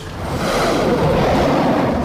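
A rushing whoosh sound effect that swells over about half a second and then holds loud, typical of a martial-arts power strike in a wuxia drama.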